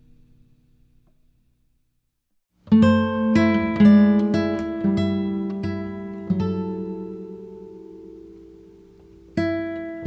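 Acoustic guitar music: the last notes of a phrase die away into a short silence, then a new slow phrase of plucked notes and chords begins about a quarter of the way in, each note struck and left to ring out.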